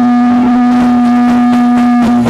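Live dance music: the band's melody instrument holds one long, steady note, with little percussion under it.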